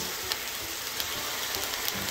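Water sizzling and bubbling in a hot frying pan: a steady hiss with small scattered pops.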